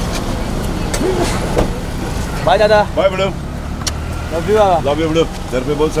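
A car engine idling with a steady low hum. Voices call out twice over it, and there are a couple of light clicks.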